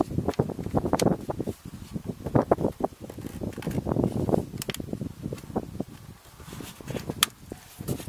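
Plastic air filter housing and intake duct of a BMW E46's M43 engine being handled and pressed into place by hand: irregular rustling and knocking of plastic, with a few sharp clicks.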